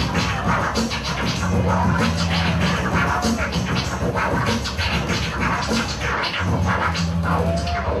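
Turntablist scratching vinyl records on turntables, with quick cuts and pitch-swept scratches over a beat. Sustained low bass notes come in twice.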